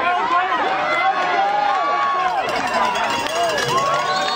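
A crowd of people yelling and cheering at once, many overlapping voices, loud and steady throughout.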